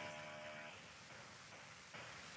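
Faint steady background hiss of a recorded online lecture's microphone, the room tone between spoken phrases, with a faint held tone that breaks off under a second in.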